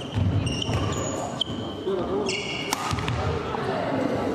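Indoor badminton rally: court shoes squeaking on the hall floor in short high squeals, twice, with a sharp racket strike on the shuttlecock near the end of the third second and thudding footfalls.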